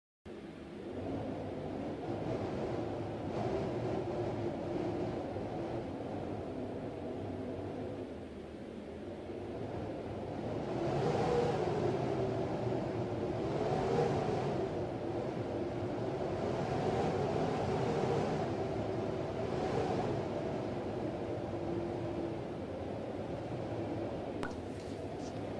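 A low, rumbling drone with wavering tones, swelling every three seconds or so from about ten seconds in.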